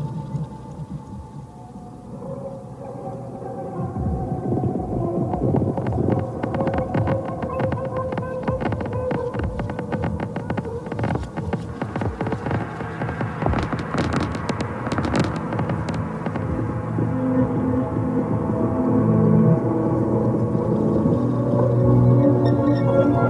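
Experimental electronic music: sustained droning tones under a dense crackling, clicking texture that thickens through the middle, with low held notes swelling and the level building toward the end.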